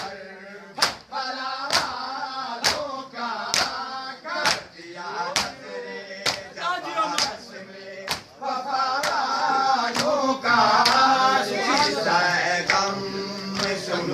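Men beating their chests in matam: sharp open-hand slaps in unison, about one a second, under a group of male voices chanting a noha lament. The chanting grows louder about eight seconds in.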